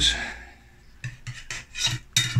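A kitchen knife blade scraping along a silicone baking mat as it is slid under slices of rolled dough: one scrape right at the start, then several shorter scrapes in the second half.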